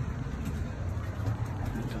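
A low, steady outdoor rumble.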